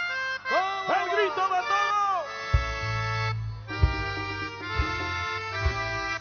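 Live guaracha band music: a held chord sustains while a man calls out over it, then bass and drum beats come in about two and a half seconds in.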